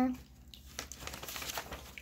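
Plastic bag holding a wax melt loaf crinkling faintly as it is handled, with small irregular crackles starting a little under a second in.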